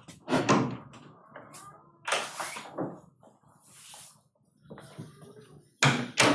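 A door opening and closing as someone comes into a meeting room, with several sharp knocks and bumps and some rustling spread over a few seconds.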